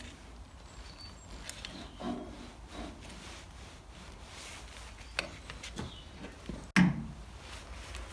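Colchester Master lathe's drive pulley, which doubles as the brake drum, being worked off its spindle by hand: faint scraping and rubbing of metal with scattered light clicks, and a louder knock near the end as it comes free.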